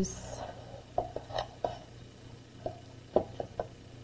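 Hands tying a ribbon around a small stack of craft blocks on a cutting mat: a scattering of short, light clicks and taps, a few in quick succession.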